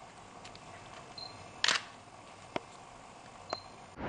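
A digital camera beeps to confirm focus and its shutter clicks, once about a second and a half in and again near the end, with a smaller click between.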